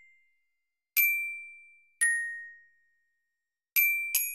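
Glockenspiel notes from a tablet glockenspiel app, each struck once and left to ring. A note rings away at the start, then two single notes follow about a second apart, the second lower in pitch. Another note comes in near the end.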